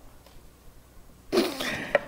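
A man coughing once, about a second and a half in, close to his headset microphone, after a stretch of quiet room tone.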